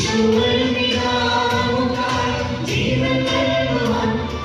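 Church choir singing a hymn into microphones, the voices holding long notes over a sustained low accompaniment.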